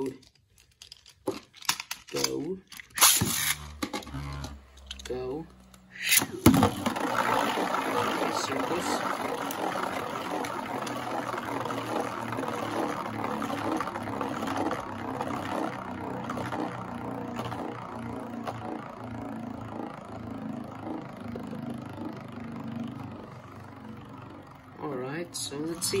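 Two Beyblade Burst spinning tops launched into a plastic stadium with a sharp clack about six seconds in. They then spin on the stadium floor, a steady whirring hiss that slowly fades as they lose speed.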